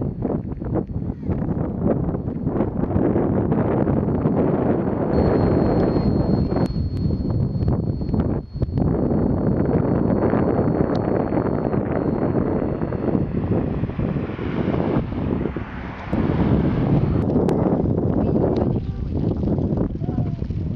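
Wind buffeting the microphone: a loud, gusting rumble with a couple of brief lulls.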